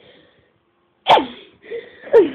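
A young woman's single sneeze about a second in: a sudden sharp burst whose pitch drops steeply.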